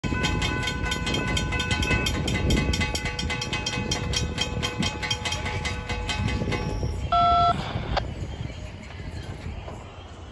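Railroad grade-crossing warning bells ringing in rapid, evenly spaced dings as the gate arms come down, falling silent once the gates are down about six and a half seconds in. About seven seconds in comes a single short, loud beep.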